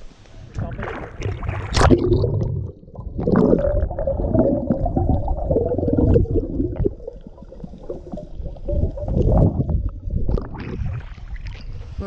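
Muffled underwater water noise picked up by a submerged camera while snorkeling: a dull rumbling and gurgling of water and bubbles, with little above the low range.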